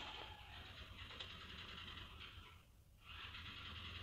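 Faint rustling of cotton yarn being drawn through the fingers and worked with a crochet hook, with a short break a little before the end.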